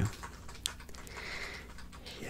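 Soft typing on a computer keyboard, with one sharper key click a little over half a second in.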